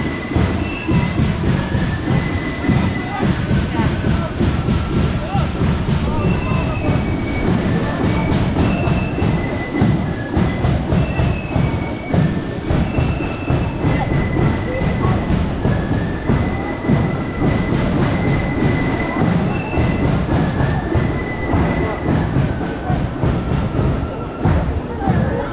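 Wind buffeting the microphone with a heavy, uneven rumble, while a thin melody of held high notes plays faintly through it, typical of the flutes of a marching flute band.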